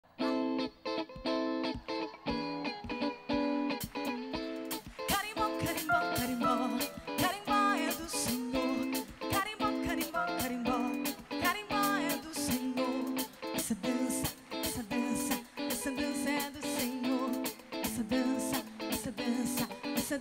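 Live carimbó band music: plucked strings open it, and percussion comes in about four seconds in with a brisk, even rhythm.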